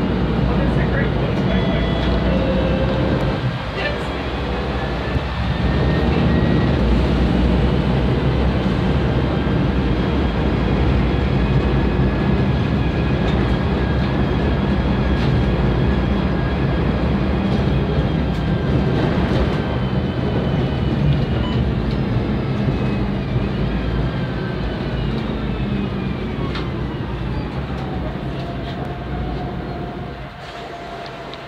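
Loud Volvo B10M single-decker bus heard from on board: its underfloor diesel runs under load with a steady rumble, and a faint whine slowly rises and falls in pitch as the bus picks up speed and changes gear.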